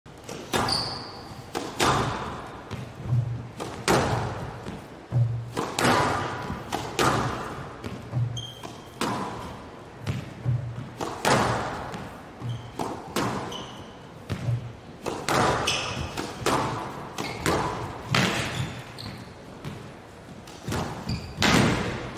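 Squash rally on a glass court: the racket striking the ball and the ball hitting the walls about once a second, each impact echoing in a large hall, with short squeaks of shoes on the court floor between shots.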